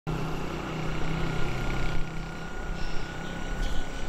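Outdoor ambience with the steady rumble of a motor vehicle running nearby. Its low engine hum fades about halfway through, under a faint steady high-pitched tone.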